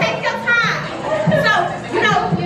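Several high-pitched voices talking and calling out over one another in a large room, with music playing in the background.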